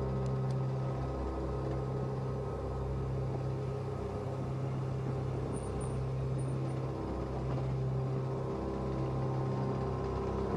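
Motorcycle engine running steadily under way, with a steady low drone and road rumble.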